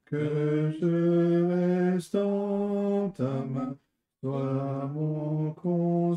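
Voices singing a slow French hymn in long held notes, with a short pause for breath about four seconds in.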